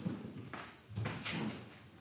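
Hymnal pages being turned, a few short paper rustles.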